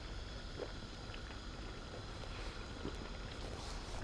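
Quiet, steady background noise with a low rumble and a few very faint soft ticks; no distinct event stands out.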